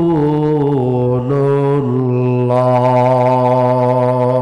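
A man chanting an Arabic durood in long held notes. His pitch steps down about a second in and again near two seconds, then he holds one steady note.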